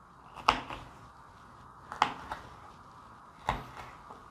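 Kitchen knife slicing through green chile pepper and striking a cutting board: three sharp knocks about a second and a half apart.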